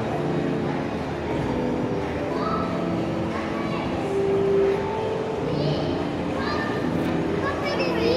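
Background voices and chatter of people and children in a large shopping mall hall.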